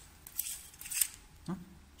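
Two short hissing blasts of compressed air from an air blow gun, about half a second apart, blowing sawdust off a drilled wooden wind-instrument blank.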